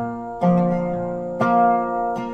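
Acoustic resonator guitar strummed in a country/folk song: two chords struck about a second apart, each left ringing.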